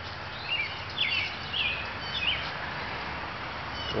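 Birds chirping outdoors: a handful of short, high chirps about half a second apart, over a steady background hiss and low rumble.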